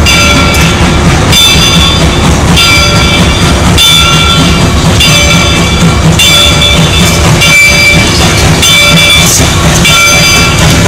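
Steam locomotive and its train passing close by with a loud, steady rumble and the clatter of the train. A bell rings about once a second over it.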